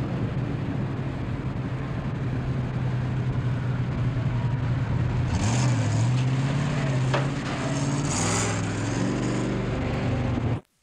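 Refuse packer truck's engine running steadily, its pitch shifting up about halfway through, with two short hisses.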